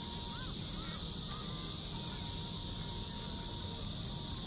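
Outdoor ambience: a steady high hiss over a low rumble, with a faint steady tone and a few faint short rising-and-falling calls in the first second.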